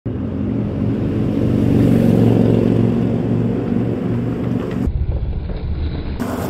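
Longboard wheels rolling over rough asphalt: a low, steady rumble that builds and eases, then turns deeper and duller about five seconds in.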